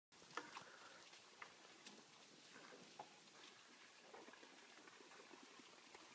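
Near silence: faint outdoor ambience with a few soft, scattered clicks in the first three seconds.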